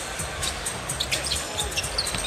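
A basketball being dribbled on a hardwood court during live play, with arena music playing underneath.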